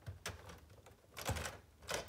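Light plastic clicks and knocks of LEGO bricks, a few separate ones, as the LEGO Grand Piano's keyboard assembly is gripped and shifted by hand.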